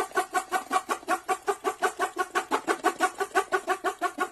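Title-card sound effect: a fast, evenly spaced pulsing sound, about seven pulses a second.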